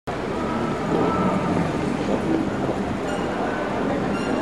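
Steady city street noise, a continuous rumble and hum with no single clear event.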